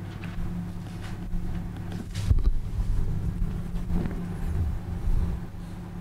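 A steady low electrical hum, with a few soft knocks and handling sounds; the loudest is a thump about two seconds in.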